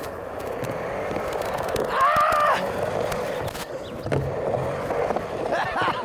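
Skateboard wheels rolling steadily on a Skatelite-sheeted ramp, with a short voice call about two seconds in and another near the end.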